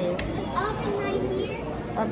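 Untranscribed voices talking, a child's voice among them, with a brief sharp click just after the start.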